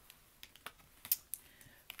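A few faint, irregular clicks and taps of tarot cards being handled and lifted off the table.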